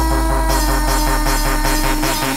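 UK bounce (scouse house) dance music: a long held low bass note under a sustained synth tone, with fast ticking percussion on top. The bass dies away near the end.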